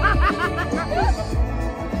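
People laughing in a quick run of short bursts in the first half, over background music with a bass beat.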